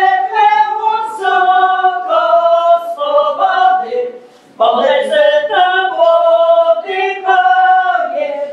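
A group of women singing a Polish folk wedding song without accompaniment, in long held notes, with a short pause for breath about four seconds in before the next phrase.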